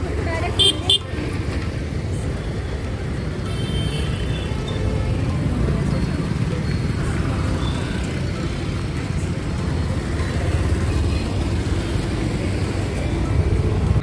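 Road traffic: a steady rumble of car and motorcycle engines passing on the street, with a short horn toot about a second in and another brief horn sound around four seconds in.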